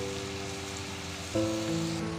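Background music of sustained chords that shift about a second and a half in, over the steady sizzle of chopped tomatoes sautéing in oil in a pan.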